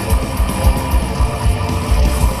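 Live heavy metal band playing: distorted electric guitars over a drum kit, with rapid kick-drum beats.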